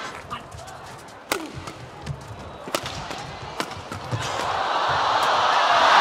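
Badminton play in an arena: a few sharp cracks of rackets striking the shuttlecock, over light thuds of footwork on the court. From about four seconds in, the crowd's noise swells steadily.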